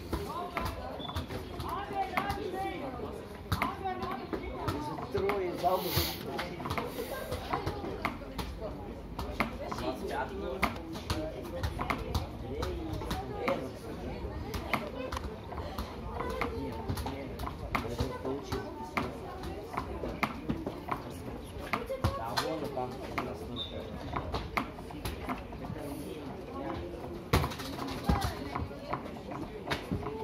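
Indistinct voices calling out across an outdoor football pitch during play, with scattered short, sharp knocks.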